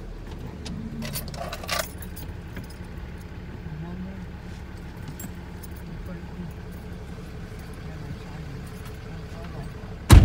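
Steady low rumble of a pickup truck driving on a dirt road, heard from inside the cab, with a few brief metallic clinks and rattles between about one and two seconds in.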